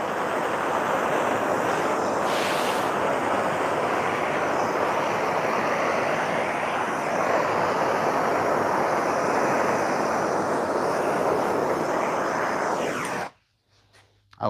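Handheld gas torch burning steadily with a rushing flame, played over freshly poured epoxy to bring out its veins and pop surface bubbles. It cuts off suddenly about 13 seconds in as the torch is shut off.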